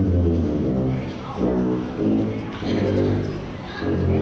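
Tuba and double bass playing very low, long notes at the bottom of their range, about three held notes in turn with short breaks between them.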